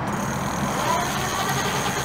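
The ENGWE X24 e-bike's rear hub motor driving the rear wheel on the push-button throttle, a steady whir with a thin high whine over it.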